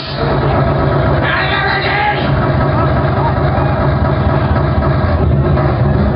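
Live electronic band starting up loud through a club PA, a steady deep bass band kicking in right at the start, with a voice over it.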